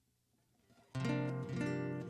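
Acoustic guitar strummed, starting suddenly about a second in after near silence, its chord ringing on.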